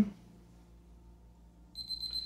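Quiet room tone, then near the end a high-pitched electronic alarm tone starts sounding and keeps going.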